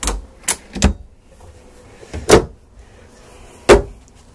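Wooden clothes-hamper cabinet door being opened and shut: a series of sharp clunks, three in the first second, then a louder one about two seconds in and the loudest near the end.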